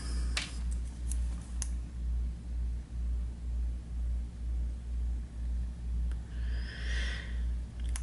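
A low hum that pulses about twice a second, with a few faint clicks in the first two seconds and a brief hiss about seven seconds in.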